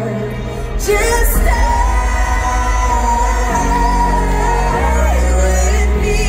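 Live pop ballad heard from the audience in an arena: a female lead vocal holds a long note over the band's backing. A sharp hit comes about a second in, after which a heavy deep bass carries the music.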